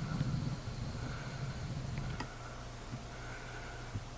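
Faint handling noise, a low rumbling in the first second and a couple of light clicks, over a steady low hum.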